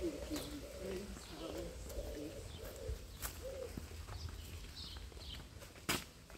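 A pigeon cooing in a run of low, rounded notes through the first half, with a few faint high bird chirps after it. Sharp footsteps of boots on paving stones, the loudest near the end.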